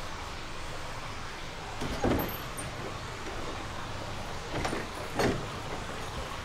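Steady splashing of water from a stone courtyard fountain, with two brief thuds about two and five seconds in.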